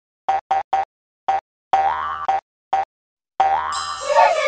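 Cartoon logo-intro sound effects: a run of short, bouncy pitched notes separated by silences, two of them longer and sliding upward in pitch. A bright, high sparkly shimmer comes in near the end.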